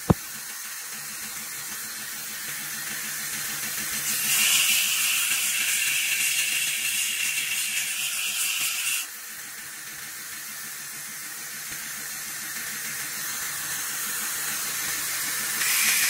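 Belt grinder running steadily, with a steel knife blade pressed against the moving belt: a grinding hiss from about four seconds in to about nine seconds, and again starting near the end. A single sharp click right at the start.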